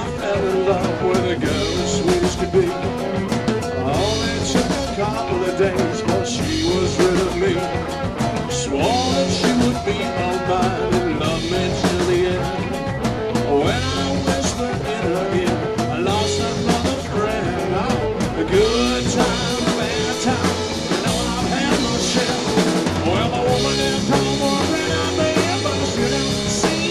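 Live rock band playing an instrumental passage: drum kit keeping a steady beat under guitar and keyboards, with many bent, gliding notes.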